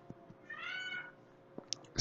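A single faint, high-pitched call about half a second long that rises slightly and falls, heard against quiet room hiss.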